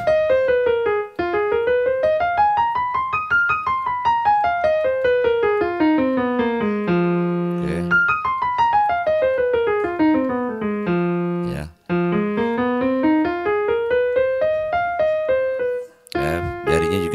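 Digital stage piano, on a piano sound, playing a blues scale in single notes. The notes run up about an octave and a half and back down, twice, then start climbing again, with a brief pause about three-quarters of the way through.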